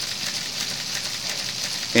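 Steady background hiss with no distinct mechanical clicks or strokes, in a brief pause between spoken sentences.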